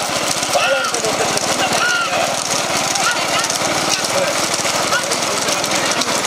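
Motorcycle engines running close behind racing bullock carts, with a rapid, rough, continuous pulsing, and voices shouting over them in short bursts.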